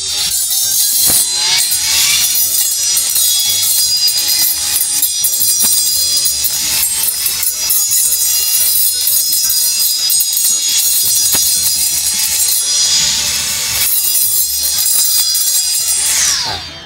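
Cordless electric brush cutter's motor whining as its toothed steel circular blade spins and cuts short grass close to gravelly soil, with background music over it. Near the end the motor winds down with a falling pitch.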